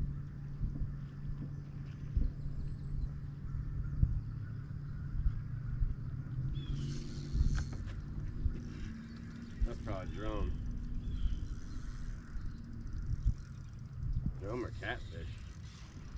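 Spinning reel being cranked and its line worked while a hooked fish is fought, giving an irregular run of ticks and clicks over a low steady hum.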